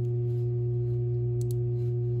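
Steady low hum with fainter steady higher tones above it, and two brief faint clicks about one and a half seconds in.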